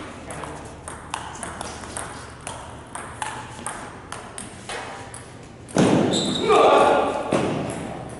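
Table tennis rally: the ball clicks off the paddles and the table about three times a second. About six seconds in the rally stops and a loud shout follows, lasting about a second and a half.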